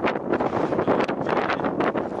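Wind blowing across the microphone: a loud rushing noise with quick, uneven gusty surges.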